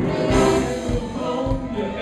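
Live blues and rock 'n' roll band playing, with a horn section of trumpet and saxophones.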